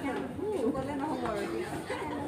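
Chatter of many diners talking at once in a crowded restaurant dining room, with no words standing out.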